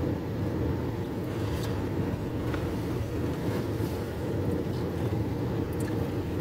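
Steady low rumble of a car driving slowly, heard from inside the cabin: engine and tyre noise on the pavement.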